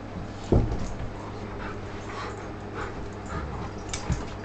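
Two golden retrievers play-wrestling: panting, short breathy snuffles and scuffling, with one loud low thump about half a second in.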